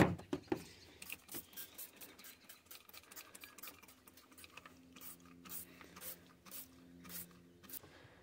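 Trigger spray bottle of degreaser squirting over and over, short hissing sprays about two or three a second. A faint steady low hum sits under the second half.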